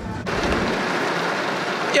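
Hard rain falling on a car's roof and windows, heard from inside the cabin: a steady hiss that starts suddenly about a quarter of a second in.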